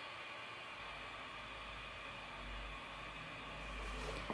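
Faint steady hiss of room tone, with a low rumble coming in about a second in.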